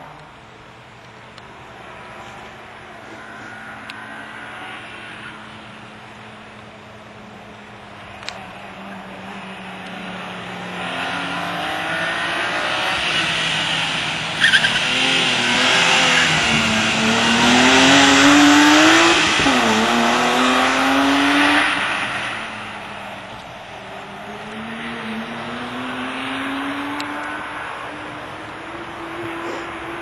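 BMW 3 Series (E36) race car engine revving hard through slalom turns. Its pitch climbs in repeated sweeps and drops back as the driver lifts and accelerates again. It is loudest in the middle of the run as the car passes close, then comes back fainter.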